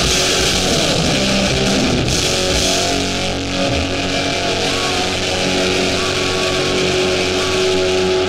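Live hardcore punk band playing loud, with distorted electric guitars and drums. About two seconds in, the cymbal wash thins and held, ringing guitar notes carry on.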